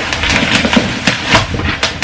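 Plastic bubble-wrap packaging crinkling and crackling as a wrapped pot is handled, a quick run of small irregular clicks.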